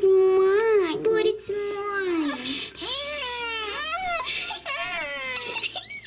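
A voice acting a toddler doll whining and crying without words, in a string of drawn-out wails that rise and fall: a fit of fussing over a turn in the toy car.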